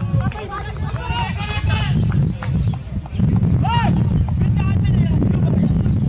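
People talking, with one raised voice a little past halfway, over a loud, uneven low rumble.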